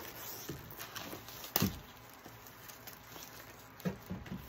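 Hands handling a vinyl LP jacket and its plastic wrapping: soft rustling and a few light taps, with one sharp click about a second and a half in.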